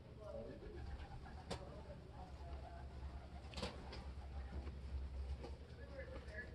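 Faint bird cooing with faint voices, over a low rumble; two sharp clicks, about a second and a half and three and a half seconds in.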